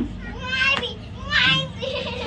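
A small girl's high-pitched squeals in play, two of them about a second apart, over a steady low hum.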